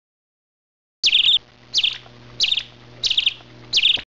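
A bird calling: five short chirping phrases, about one every two-thirds of a second, starting about a second in.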